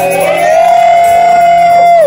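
Live acoustic song: a voice holds one long high note over strummed acoustic guitars, rising slightly into it and sliding down in pitch as it ends.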